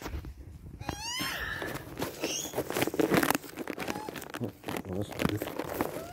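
Young Australian magpie begging for food with a rising, squawking call about a second in, and fainter short calls later. Rustling and knocking close by as the camera is moved through grass and leaves.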